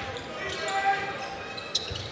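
A basketball being dribbled on a hardwood court during live play, under general crowd chatter in a large arena.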